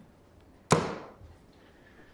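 A single sharp knock about two-thirds of a second in: a plastic puzzle cube set down hard on a coffee table.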